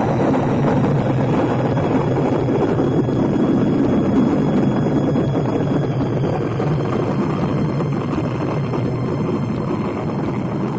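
Rocket launch sound effect: a loud, steady noise of rocket engines at liftoff, easing off slightly in the second half.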